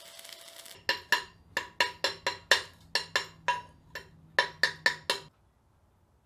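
Chipping hammer knocking slag off freshly laid stick-weld beads on a steel plate: about eighteen sharp metallic strikes at an uneven three or four a second, each with a brief ring, stopping a little after five seconds in.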